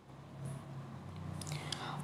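Faint, soft whisper-like voice and breath sounds over a low steady hum, slowly growing a little louder toward the end.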